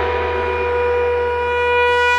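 Dramatic background score: a single sustained horn-like note held steady over a low drone.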